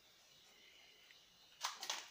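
Quiet room tone with faint hiss; near the end, two short clicks.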